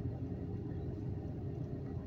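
Steady low vehicle rumble heard inside a car's cabin, with a faint constant hum over it.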